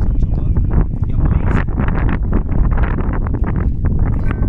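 Wind buffeting the microphone as a heavy, continuous rumble, with a man's voice talking through it.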